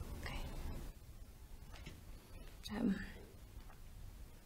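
Quiet speech: a young woman says a soft 'OK' at the start and a hesitant 'um' a little under three seconds in, over a faint low hum of room tone.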